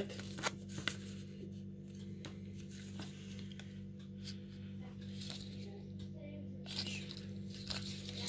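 Paper yarn ball band crinkling and rustling in the hands as it is turned over, a scattering of small separate crackles, over a steady low hum.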